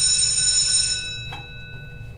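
School bell ringing: a steady, high-pitched electric ring that fades away over the second half. There is a single short knock about a second and a half in.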